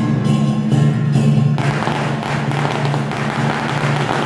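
Procession music with a steady low drone and percussion strikes about twice a second. About one and a half seconds in, a dense crackle of firecrackers sets in over it.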